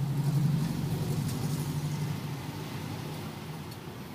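A road vehicle's engine rumbling as it passes, loudest about half a second in and fading away over the next two seconds.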